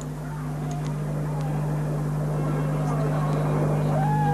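A steady low drone under a rushing noise that slowly swells louder, with a few faint gliding tones.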